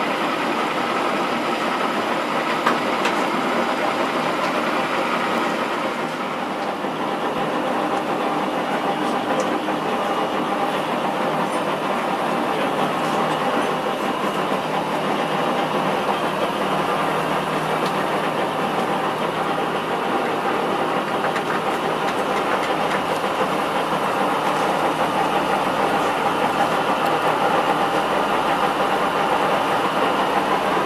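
Lodge & Shipley big-bore right-angle chucking lathe running, its large faceplate spinning: a steady whir of gearing and drive with several steady tones. There is one sharp click about three seconds in, and the sound grows slightly louder near the end.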